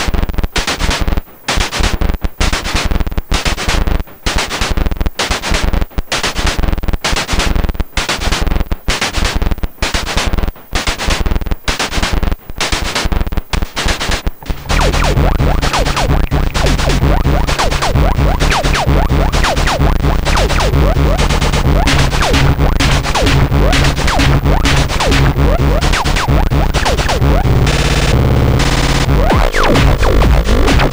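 Distorted, hardcore-style electronic drum pattern from a Perkons HD-01 drum machine, its kick run through an EarthQuaker Data Corrupter and its snare/hi-hat channel through a Bastl Softpop, sounding as sharp, gritty hits with brief gaps between them. About halfway through, a continuous heavy low synth layer from the modular rig comes in under the beat and the sound turns dense and unbroken.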